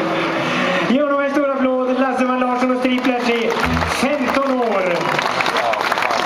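A man's voice coming through a concert PA, with some held, drawn-out words and a falling call, over crowd noise. Scattered clapping grows near the end.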